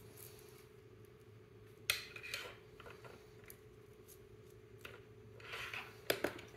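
Faint, scattered clicks and rustles of small objects being handled, with a sharper click about two seconds in and more rustling near the end, over a steady low hum.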